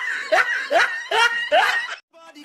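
A person laughing in short rising bursts, about two a second, cut off suddenly at the end.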